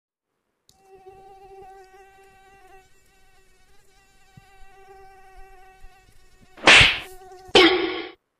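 Mosquito buzz played from a phone held beside a sleeper's ear: a steady, high whine that wavers slightly. Near the end come two loud, sudden noises, the first a sharp hit.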